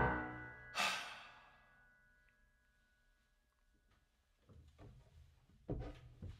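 The final piano chord dies away and its notes ring on faintly for a few seconds, with a long exhaled sigh just under a second in. Near the end come a few faint soft noises.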